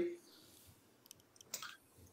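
A quiet pause with a few faint, small clicks, the most noticeable one a little after halfway.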